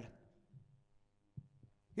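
A pause in a man's amplified speech: his last word dies away in the hall's echo, leaving a faint steady hum with two or three soft low thumps.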